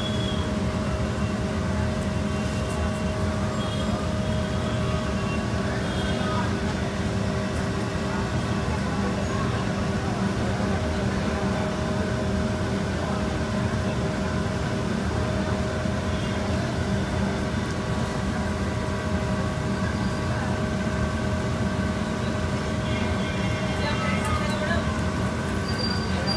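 Steady low rumble with a constant hum from the kitchen's stoves and equipment, with occasional faint clinks.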